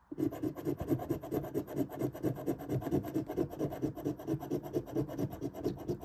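Scratch-off lottery ticket being scratched rapidly, the coating rubbed away in quick, even back-and-forth strokes, roughly ten a second, kept up without a break.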